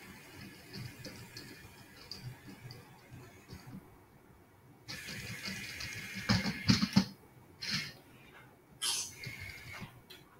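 Moorebot Scout robot's small wheel motors whirring as it manoeuvres and reverses into its charging dock, louder from about five seconds in. A few knocks follow a little past halfway as the robot bumps into the dock.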